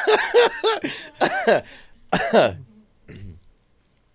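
A man laughing hard in a quick run of short pitched bursts that fades out about three seconds in.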